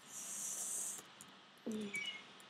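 A sharp, high-pitched hiss lasting about a second, followed by a few faint clicks and a brief spoken 'uh' near the end.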